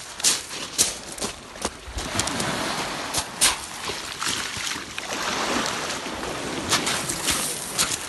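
Footsteps crunching on shingle pebbles over surf washing in on a shingle beach. The crunches come thick in the first couple of seconds, then a louder, steady wash of water over the stones takes over.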